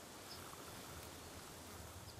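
Faint, steady background hiss of quiet outdoor ambience, with no distinct sound in it.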